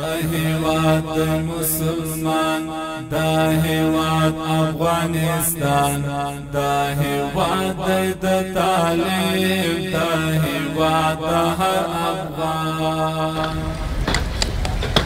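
Chanted vocal music laid under the pictures, with long, sustained sung notes that stop shortly before the end.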